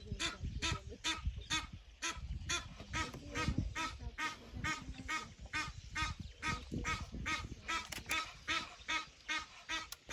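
A wild duck calling over and over in short, even calls, about three a second, under a low rumble.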